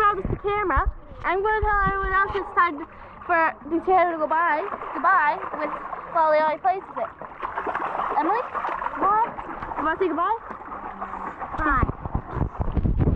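High-pitched children's voices chattering and calling out, with water splashing in a swimming pool, heaviest around the middle.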